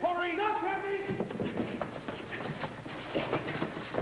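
A short dramatic music cue ends about a second in, followed by the scuffle of a fistfight: shuffling feet, bumps and blows.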